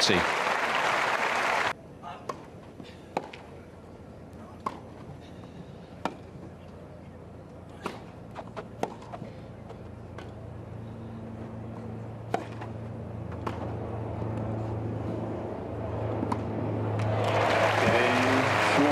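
Crowd applause that cuts off abruptly after a second and a half, then a tennis rally on grass: sharp racket strikes on the ball at irregular intervals of one to two seconds. Crowd noise swells steadily over the last few seconds.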